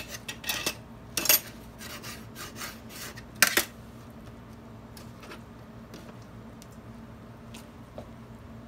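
Kitchen knife sawing through a tortilla wrap and scraping and clacking against a metal sheet pan, a quick series of scrapes and knocks in the first few seconds with the loudest clack about three and a half seconds in, then only a few faint taps.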